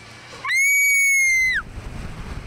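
A rider's high-pitched scream as the slingshot ride launches: one held note of about a second starting half a second in, dropping in pitch as it cuts off. Then wind rushing on the microphone as the capsule shoots upward.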